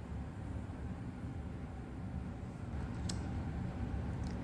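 Quiet room tone: a steady low hum and hiss, with one faint tick about three seconds in.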